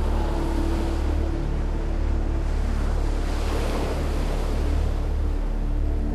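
Sea waves washing and churning, swelling to a louder surge about halfway through.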